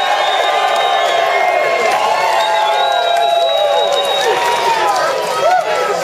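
Concert crowd cheering, whooping and whistling between the set and the encore, with a long high whistle held until about four seconds in.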